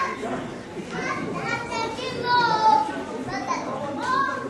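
Several high-pitched voices shouting and calling out over an open field, with one long, loud call a little past halfway.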